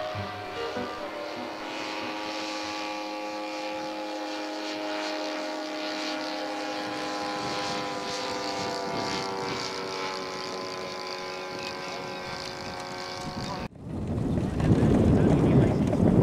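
Engine of a radio-controlled scale biplane running steadily in flight, a droning note that sags slowly in pitch. Near the end it cuts off suddenly to a louder rushing noise.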